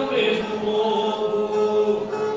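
Cantoria, Brazilian Northeastern improvised sung verse: a voice slides briefly near the start, then holds one long drawn-out note over strummed string accompaniment.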